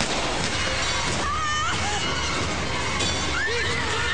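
A sniper rifle shot at the very start, followed by a dense crashing, shattering din with brief shouts and screams over dramatic music.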